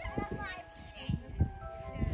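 Young children's voices calling out while playing, over background music with long held notes, with low thuds underneath.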